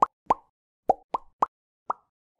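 A run of short plopping sound effects, six quick pops each sweeping briefly upward in pitch, spaced a fraction of a second apart, as part of an animated logo sting.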